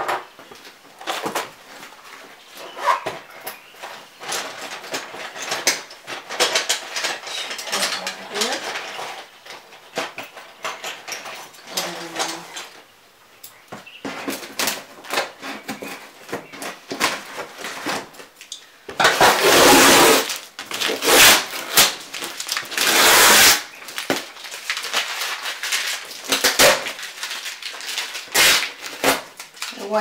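Scissors cutting and scraping along the packing tape and cardboard seam of a large shipping box, a long run of short scratching and snipping sounds. About two-thirds of the way through come several loud, noisy ripping bursts as the tape and cardboard are torn open.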